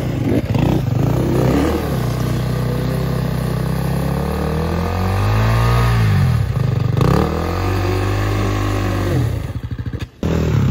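Enduro dirt bike engines revving in repeated rising and falling bursts, the throttle worked hard to drive up a steep, slippery mud-and-rock climb.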